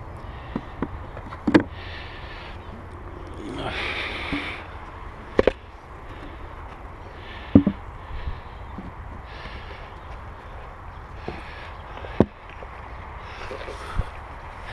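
Wooden beehive boxes and a plywood hive cover being handled and set down, giving a string of sharp wooden knocks spaced a second or more apart, with brief rustling scrapes in between, over a steady low hum.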